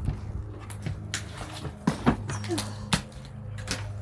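Footsteps and sharp knocks as someone climbs into a gutted camper and steps over loose wood scraps and debris on its floor, about half a dozen separate knocks and clatters, with a steady low hum underneath.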